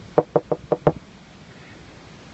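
Five quick knuckle knocks on a giant yellow unpopped-popcorn-kernel sculpture, all within the first second.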